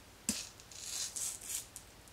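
A manga paperback set down on a stack of books with a light knock, then a few soft scraping rubs as it is slid into place.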